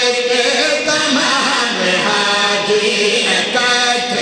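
A group of men chanting a devotional refrain together into microphones, in long held notes.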